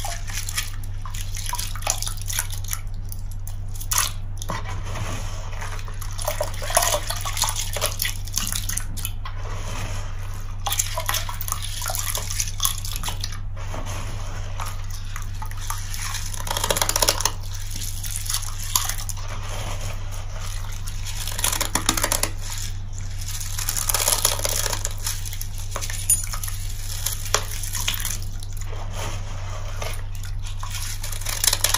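A wet sponge coated in crystallized laundry-detergent paste squeezed and wrung by hand over a plastic tub, squelching as soapy blue liquid streams and drips back into the tub in irregular surges.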